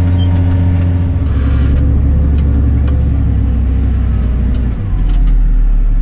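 Massey Ferguson 8470 tractor engine heard from inside the cab, running steadily under load, with its note dropping in two steps, about a second in and again near the end, as the plough is lifted at the headland. A few light clicks sound over it.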